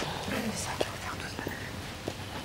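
Two people talking in hushed, whispered voices.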